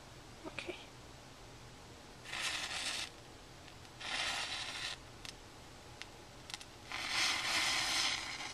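Three soft, airy puffs of breath about a second each, blowing out lit matches after lighting the candles in a carved pumpkin.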